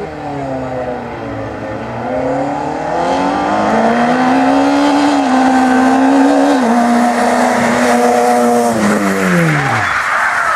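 Peugeot 106 race car's four-cylinder engine revving hard under acceleration, its pitch climbing and stepping down twice at upshifts, then held high. Near the end the revs fall away steeply as the driver lifts off for a hairpin, and the tyres begin to squeal.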